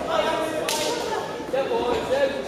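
A single sharp slap of a boxing-glove punch landing, about two-thirds of a second in, with a short echo, over the chatter of spectators' voices in the hall.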